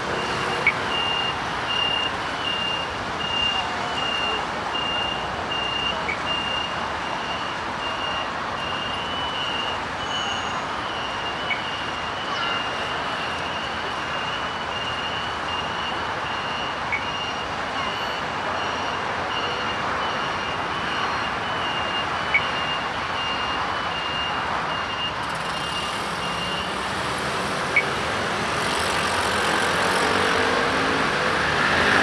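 A pedestrian crossing signal's audible beeper giving a high, evenly repeating beep about two to three times a second over steady street traffic, stopping a few seconds before the end. Short sharp ticks come about every five seconds.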